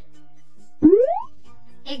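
Cartoon sound effect: one quick upward pitch glide lasting about half a second, played over soft children's background music. A voice starts saying 'igloo' at the very end.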